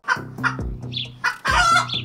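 Short clucking calls like a chicken's, over a break in electronic music.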